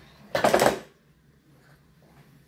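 A spoon clattering and scraping against a stainless steel pot of mashed potatoes: a quick, loud run of knocks lasting about half a second, starting about a third of a second in.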